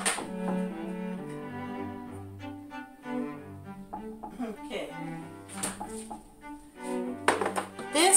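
Background music of bowed strings, with slow held low notes like a cello that change every second or so.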